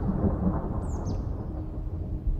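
Low rolling thunder rumble, a steady noisy roll, with the last held note of the background music fading out under it.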